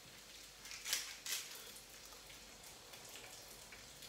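Faint crackly grinding of a pepper mill cracking black pepper, with a couple of light clicks about a second in.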